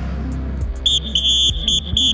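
A coach's whistle blown in a quick series of short, shrill blasts starting about a second in, the last blast held a little longer, over background music with a steady bass.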